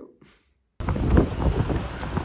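Strong wind buffeting the microphone in gusts: a loud, low rush that starts abruptly a little under a second in.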